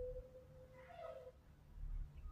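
Quiet room tone with a low hum. A faint, thin steady tone fades out a little after a second in, and a faint short higher-pitched sound comes about a second in.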